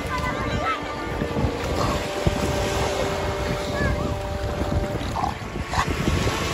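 Beach ambience: wind buffeting the microphone over surf, with faint voices of people in the background.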